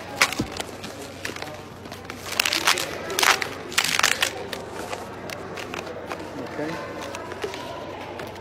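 Red latex 360 twisting balloon squeaking and rubbing under the hands as it is twisted into pinch twists, the loudest run of squeaks about two to four seconds in.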